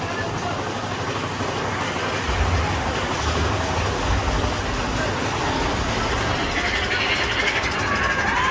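Big Thunder Mountain Railroad mine-train roller coaster running along its track, heard from the front row as a steady rumbling noise. A deeper low rumble comes in about two seconds in and eases off a few seconds later.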